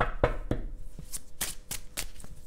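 A deck of oracle cards shuffled by hand: a run of quick, sharp card snaps, about seven in two seconds, unevenly spaced.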